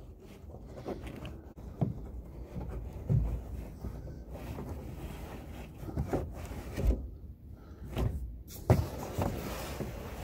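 Rustling, scraping and irregular soft knocks of hands working under a car's carpeted rear parcel shelf, pulling at the sound-deadening padding beneath it.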